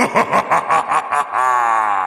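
Laughter: a quick run of about eight or nine short bursts, then one longer drawn-out laugh that trails off near the end.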